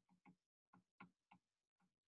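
Near silence: faint ticks, about three a second, over quiet room tone.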